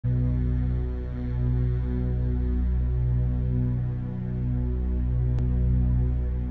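Low, sustained musical drone: a steady chord of deep tones that slowly rises and falls in level, opening the music track before the melody comes in.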